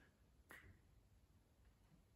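Near silence: room tone, with one faint click about half a second in.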